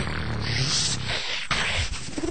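Live beatboxing: long breathy hissing sounds over a steady low hum, without sharp beats.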